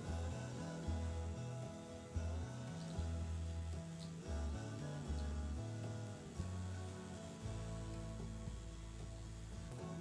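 Quiet background music with a bass line that changes note about every half-second, settling on one long low note near the end.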